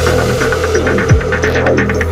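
Intro of an electronic drum and bass / psytrance track. A deep bass drone is held under a steady mid-pitched tone, with quick repeating pulses and a falling pitch sweep about a second in.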